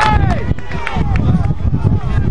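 Several voices shouting and calling out in short bursts, over a steady low rumble like wind on the microphone.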